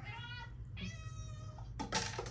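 Domestic cat meowing twice, a short meow and then a longer, level one of about a second, asking for treats held out of its reach. A short knock near the end.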